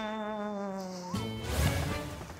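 A sustained buzzing tone, sinking slightly in pitch, cuts off about a second in. It is followed by a swelling whoosh as the barbecue grill flares up in a burst of flame.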